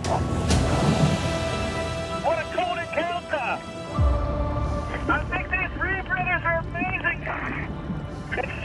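A person's voice, with words not made out, over tense background music. A rush of noise comes about half a second in, and a deep low boom about four seconds in.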